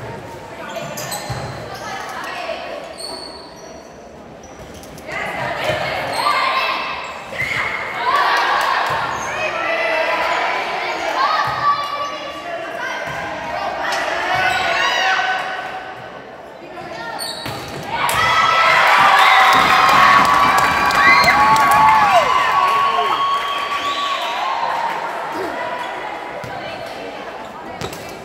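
Volleyball game in an echoing gym: the ball is hit with sharp knocks, and players and spectators call out and shout. The shouting and cheering swell to their loudest about two-thirds of the way through, then die down.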